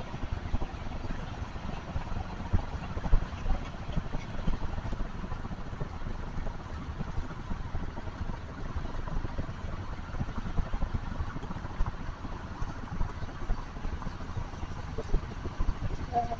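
Steady low rumble of a car driving along a road, heard from inside the car.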